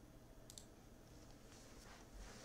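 Near silence with a few faint clicks from someone working at a computer: a sharp one about half a second in and softer ones later.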